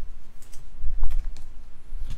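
Handling noise of a trading card and a clear plastic penny sleeve on a table: a few sharp clicks and crinkles over dull low knocks from hands on the tabletop.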